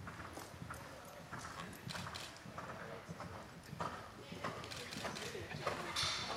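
Horse's hoofbeats on the sand footing of a riding arena as a ridden horse canters around the jumps, with a louder burst of hoofbeats near the end as a second horse passes close.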